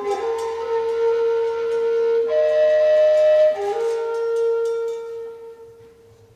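Furulya, the Hungarian wooden shepherd's flute, playing a slow folk tune in long held notes, fading out near the end.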